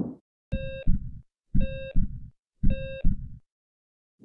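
Heartbeat sound effect: three lub-dub double thumps about a second apart, each paired with an electronic heart-monitor beep, opening a segment's logo sting. A soft rush of sound fades out at the very start.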